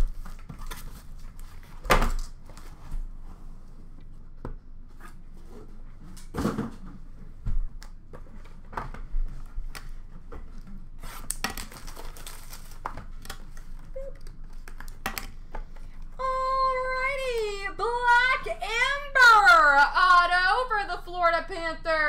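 Cardboard shipping case being cut open and hobby boxes unpacked and stacked on a glass counter: scattered knocks, taps and rustling with a few louder thumps. About two-thirds of the way through, a person's voice comes in, rising and falling in pitch.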